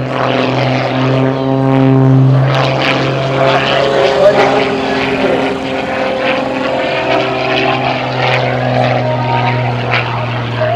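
Extra 300 aerobatic plane's six-cylinder piston engine and propeller running at steady power in flight, a continuous drone that holds its pitch, with a small shift about two and a half seconds in.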